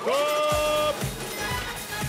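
Game-show jingle: a synth tone swoops up and is held for about a second, then stops. Under it a deep bass beat thumps about twice a second. The sting marks the start of the cash-question round.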